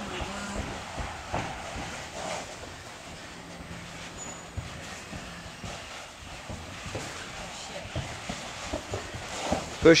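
Faint background voices in a gym, with scattered light knocks and rustling from people crawling on hands and knees across carpet.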